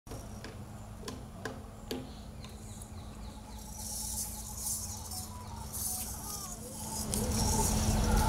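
Drums of a Kandyan drum ensemble struck a few times, sharp and sparse, in the first two seconds, over a low steady hum. A soft, high shimmering rattle follows in the middle, and the sound grows louder near the end.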